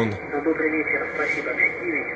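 Amateur radio voice traffic on the 40-metre band, received by an RTL-SDR Blog V3 dongle and played from a laptop speaker: an operator's voice, thin and hissy, with everything above the speech range cut off.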